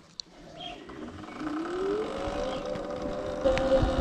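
Sur-Ron electric dirt bike's motor whining as the bike pulls away: the whine rises in pitch over about a second, then holds a steady tone at cruising speed. A low rumble comes in near the end.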